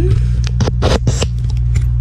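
A steady low mechanical hum, like an idling engine, under rustling and scraping handling noise on the microphone about half a second to just past a second in.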